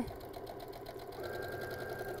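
Electric sewing machine stitching steadily at speed, its needle running in a rapid even rhythm as it sews a quarter-inch seam through pieced quilt fabric. A faint high motor whine comes in about halfway through.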